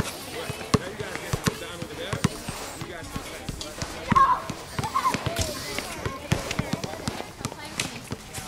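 A basketball bouncing on a hard outdoor court: irregular sharp thuds, mixed with people's voices and a short call about four seconds in.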